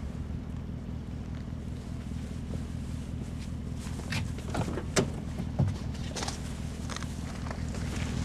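Steady low hum of an idling car engine. About halfway through, a car door is opened, with sharp clicks and knocks from the latch and handle, footsteps, and the rustle of a plastic shopping bag.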